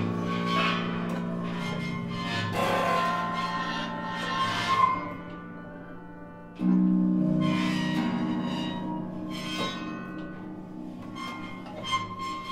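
Improvised live trio music on grand piano, drum kit and harp. A deep note is struck twice, at the start and at about six and a half seconds, each left ringing, with shimmering cymbal washes in between.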